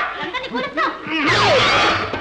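Film soundtrack of excited voices laughing and crying out without words, with a long high falling cry about a second in and a louder burst of voice near the end.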